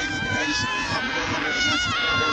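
Women shrieking and squealing in a loud, crowded club, with long, high, wavering squeals.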